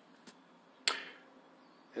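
A quiet pause broken by one sharp click just under a second in, which fades over a few tenths of a second. A much fainter tick comes shortly before it.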